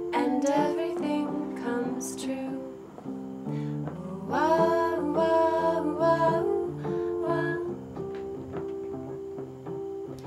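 A song: a repeating keyboard melody of held notes, with women's voices singing together over it from about four seconds in until about seven seconds in. The vocals run through a 12AY7 tube microphone preamp.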